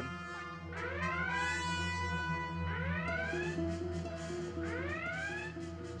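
Starship bridge red-alert klaxon: a rising electronic whoop repeating about every two seconds, over orchestral music with brass.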